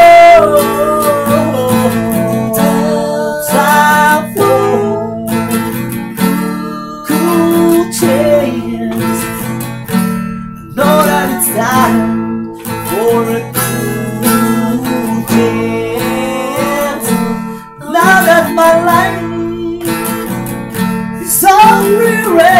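Steel-string acoustic guitar strummed in chords, with two men singing over it; a long held vocal note opens it.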